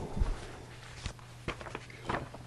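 Handling noise on a table near the microphone: a dull thump, then a few light clicks and taps, over a faint steady hum.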